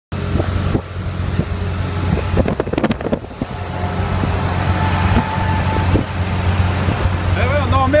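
Inside the cab of an old van at motorway speed: the engine drones steadily under wind and road noise. A brief run of rattling knocks comes about two and a half to three seconds in.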